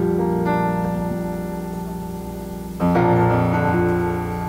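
Electric keyboard playing slow, held chords to open a gospel song. One chord fades gradually and a new, louder chord is struck near the end.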